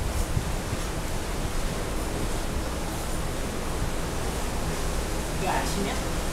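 Wind blowing over the microphone on an open ship's deck at sea: a steady rushing noise with an uneven low rumble.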